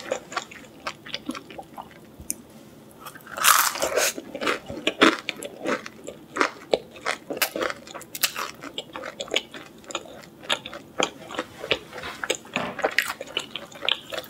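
A person biting and chewing the crispy edge of a pizza crust, close-miked: irregular crisp crunches and wet mouth sounds, with the loudest, densest crunching about four seconds in.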